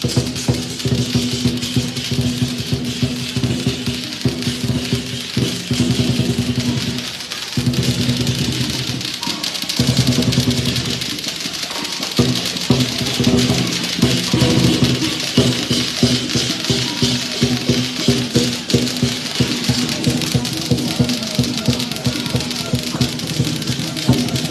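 Chinese lion dance percussion band playing: a drum beaten in rapid strokes under a continuous wash of clashing cymbals, with a brief thinner stretch about seven seconds in.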